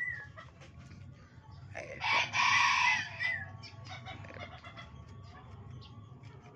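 A chicken calling loudly once for about a second, starting about two seconds in.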